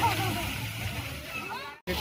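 Distant children's voices and shouts from kids playing in a pool, over a steady low hum, fading gradually and then cutting out briefly to silence just before the end.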